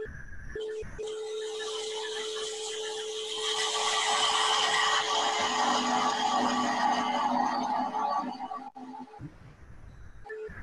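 Wood lathe running with a steady whine while a 3/8-inch spindle gouge rounds the spinning wooden blank, a cutting hiss that grows louder about three and a half seconds in and stops near the end.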